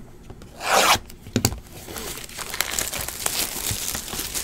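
Plastic shrink-wrap being torn off a sealed trading-card box: one loud rip about a second in, then crinkling and rustling of the plastic and cardboard as it is pulled away.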